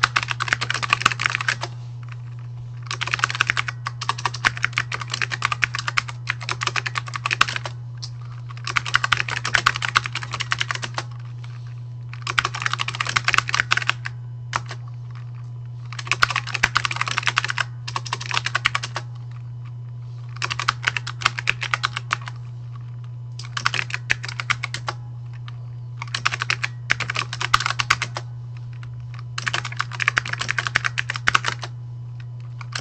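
Typing on a computer keyboard: bursts of rapid keystrokes, each a second or two long with short pauses between, over a steady low hum.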